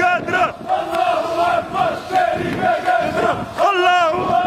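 A group of men chanting and singing together in loud celebration, many voices at once.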